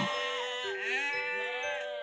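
A sheep bleating once, a long drawn-out call that rises and then falls in pitch, over faint steady background notes.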